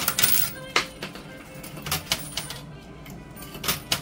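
Metal coins clinking in a coin pusher arcade machine: a quick run of clinks at the start, then single clinks every second or so. Arcade music plays underneath.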